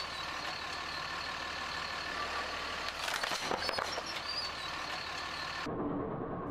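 Dodge Ram 2500 diesel pickup's Cummins inline-six engine running steadily as the truck creeps slowly onto a test rail, with a few faint clicks about three seconds in.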